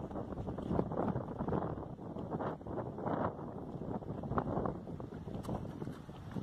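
Strong wind buffeting the microphone: a gusty rushing noise that swells and fades over and over.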